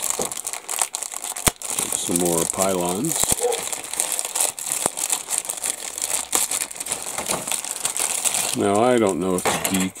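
Clear plastic bag crinkling steadily as hands handle it and pull it open around grey plastic model-kit sprues, with a couple of sharp clicks in the first few seconds.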